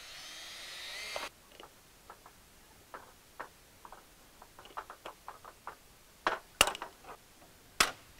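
Cordless drill boring a rivet hole in a fiberglass channel, its whine rising in pitch until it stops suddenly about a second in. Then a hand pop-rivet tool is worked, with light clicks and a few sharp snaps in the last two seconds as the rivets are set.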